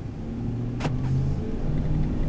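The 5.4-litre V8 of a 2006 Ford F-150, heard from inside the cab, pulling away from a stop and getting steadily louder. About a second in comes a single sharp click: the power door locks engaging automatically as the truck takes off.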